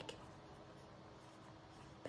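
Faint scratching of a pen writing on notebook paper.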